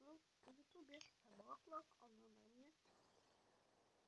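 A person's voice speaking quietly for the first two and a half seconds or so, then near silence.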